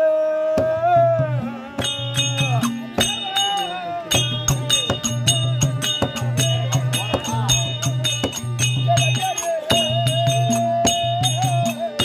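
Therukoothu folk-theatre music: a held, wavering melody line over a steady drum beat, with bright metallic clicks on the beats.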